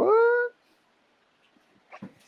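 A man's voice saying a drawn-out "what?" that rises in pitch, about half a second long, followed by faint room noise.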